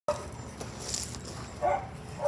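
A dog gives one short yip near the end, over a low, steady outdoor background.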